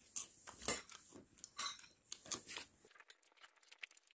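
Faint, irregular crunching of freshly popped popcorn being chewed, a few crisp crunches in the first two and a half seconds, then only faint ticks.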